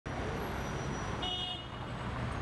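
Steady city traffic noise from the street, with a brief high tone a little over a second in.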